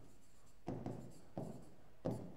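Pen strokes on a writing board as a word is written out: a few short, quiet strokes, spaced apart.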